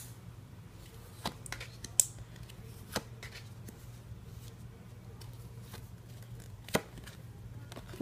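Tarot cards being drawn and laid onto a tabletop: a few scattered light taps and slaps of card on the table, over a low steady hum.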